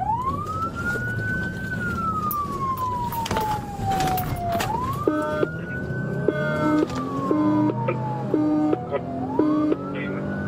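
Police car siren in wail mode, heard from inside the pursuing cruiser, rising and falling in slow sweeps about every four and a half seconds. From about halfway through, a second pulsing tone repeats about once a second. Engine and road noise run underneath.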